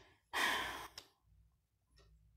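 A single audible breath from a man close to the microphone, lasting about half a second, followed by a faint click.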